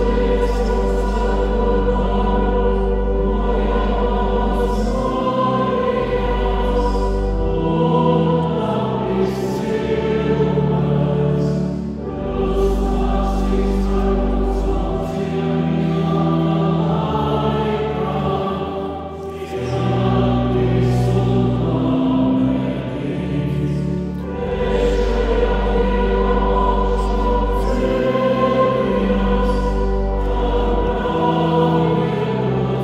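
Choir singing sacred music in long held phrases, with short breaks between them, over a sustained low bass accompaniment.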